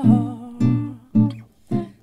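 Acoustic guitar playing chords, struck in separate strokes about half a second apart, between sung lines. A woman's held sung note trails off at the start.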